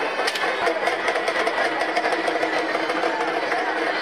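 Crowd noise: many voices talking and calling out at once over a steady din.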